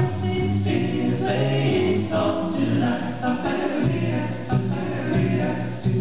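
A cappella vocal ensemble singing in close harmony, with a low bass part under the higher voices and no instruments.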